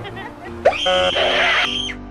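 Children's cartoon music, with a loud sound effect about a third of the way in that holds a shrill, screechy tone for just over a second and then cuts off.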